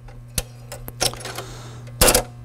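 Seeburg jukebox mechanism giving a few sharp mechanical clicks over a steady low hum as it starts its cycle after a selection is made.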